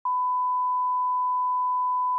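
Broadcast line-up test tone of the kind played with colour bars: one steady, pure beep at the standard 1 kHz pitch.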